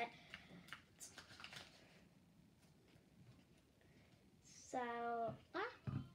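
Faint scraping and light clicks of a spoon stirring glue-and-activator slime in a bowl over the first couple of seconds, as the slime starts to come together. The stirring then goes quiet, and a child starts speaking near the end.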